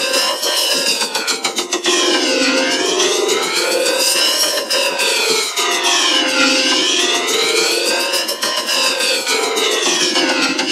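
A Burger King Whopper commercial's soundtrack distorted by heavy audio effects. A sweeping pitch glides down and back up about every four seconds, giving a siren-like whoosh over the whole sound, with rapid clicks through it.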